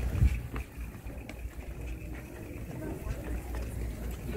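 Shopping cart pushed briskly across a hard store floor: a steady low wheel rumble with scattered rattles and clicks, and a loud thump just after the start. Faint voices in the background.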